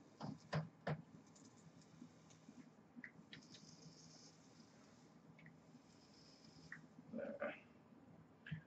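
Two sharp clicks near the start, then a faint high hiss for a few seconds as a clone Avid Lyfe Able mechanical tube mod with a freshly wicked rebuildable deck is test-fired and a puff of vapour drawn and blown out.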